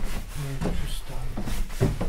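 Short bits of low talk over the steady low hum of running grain-mill machinery.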